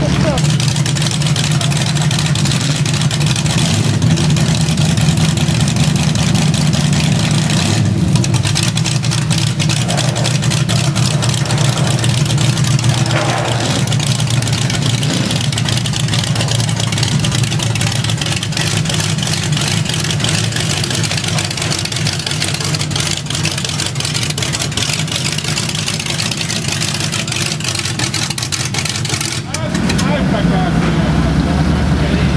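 Hot rod car engines running loudly at idle, a steady, rough exhaust note with rapid firing pulses that carries on without a break.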